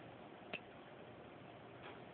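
Quiet room tone broken by one sharp click about half a second in, with a faint softer sound near the end.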